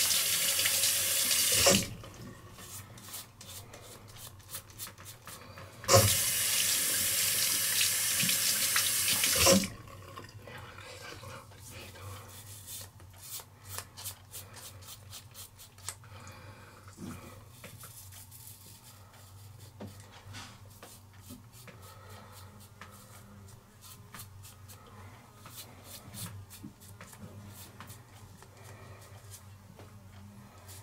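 Hot water tap running into a sink twice, for about two and about three and a half seconds, as the razor is rinsed. Between and after, a five-blade Gillette ProGlide Shield cartridge razor makes many short, quiet scraping strokes through shaving cream on head and face stubble.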